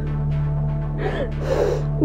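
Background music with a steady low drone, and a woman crying with a sobbing, gasping breath about a second in.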